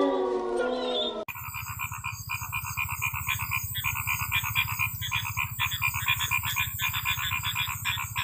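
The tail of a long, falling howl fades out in the first second. A dense frog chorus then starts abruptly about a second in: many fast, pulsing calls over a low steady hum.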